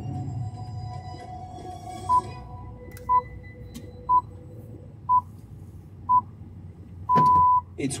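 BBC Greenwich Time Signal on the radio, the 'pips': five short beeps one second apart, then a sixth longer beep at the same pitch that marks the top of the hour, one o'clock GMT. Soft music from the station ident fades out before the pips begin.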